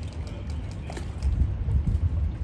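Harbour water lapping and slapping with scattered small knocks, under an uneven low rumble of wind on the microphone that grows stronger in the second half.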